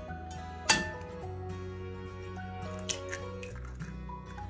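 Background music with a single sharp tap about a second in: an egg being cracked on the rim of a mixing bowl. A fainter click follows near three seconds in as the shell is pulled apart.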